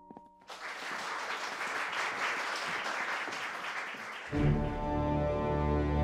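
A crowd applauding for about four seconds, then loud, low brass-led orchestral music comes in abruptly and carries on.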